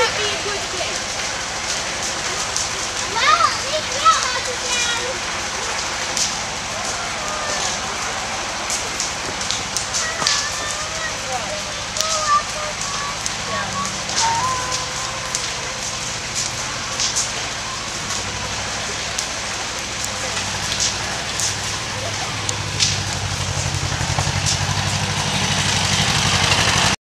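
Wood fire crackling, with irregular sharp pops and faint voices now and then. A low engine sound comes in and grows louder over the last several seconds.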